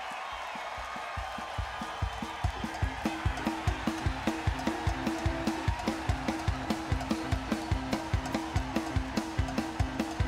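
Crowd cheering, then a live rock band starts a fast song: the drum kit comes in a second or two in with a fast, steady beat, joined about three seconds in by a repeating two-note riff.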